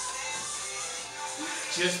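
Background music playing at a steady level under the workout, with held tones and no break.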